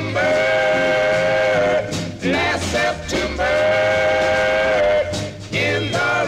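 Instrumental break of a 1950s doo-wop record: a saxophone holds two long notes of nearly two seconds each, with a short phrase between them, over the band's bass line.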